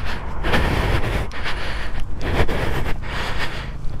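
Wind rushing over the microphone with the low rumble of a motorcycle moving along the road, steady with small swells in level.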